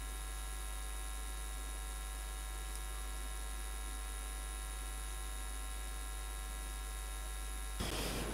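Steady electrical mains hum on a microphone or audio line, a buzz made of many evenly spaced overtones that holds unchanged; the buzz cuts off just before the end.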